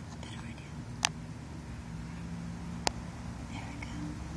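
Two sharp clicks, about a second in and again just before three seconds in, over a low steady hum, with faint whisper-like breathing.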